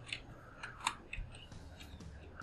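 Faint, scattered clicks of computer keys and a mouse as a formula is typed into a spreadsheet cell, about five separate clicks.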